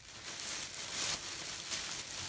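Rustling and crinkling of clothes and packaging being handled, swelling in the middle.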